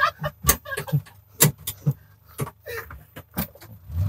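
Irregular sharp clicks and knocks from a van's cabin fittings, about six over a few seconds, with a little faint laughter near the start.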